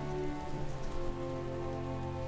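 Soft background music holding sustained chords, over a faint grainy hiss like light rain.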